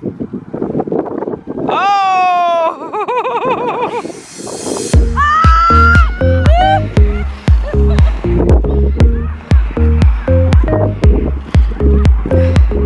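Children's shrill shouts and squeals with sweeping pitch for the first few seconds, then a rising swoosh and, from about five seconds in, upbeat electronic background music with a steady pounding beat.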